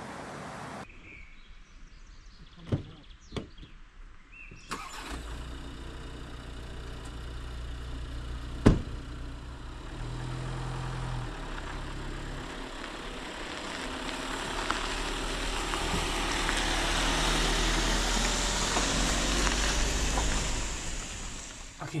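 A VW Grand California camper van's diesel engine starting about five seconds in and then running steadily, after a couple of knocks and with one sharp click near nine seconds. Over the second half a hiss of road or rain noise grows louder.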